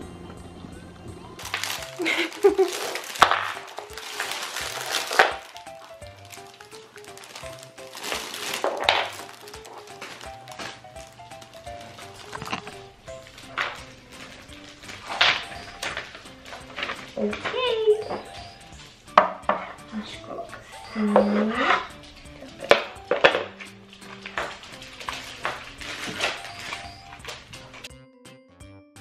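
Rustling of paper and plastic packaging and light knocks of wooden parts as a wooden baby push walker is assembled, the longest rustles about two to five seconds in and again near nine seconds, over light background music.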